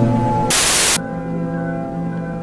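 Droning music of steady held tones, cut about half a second in by a half-second burst of loud static that ends abruptly; the held tones then go on more quietly.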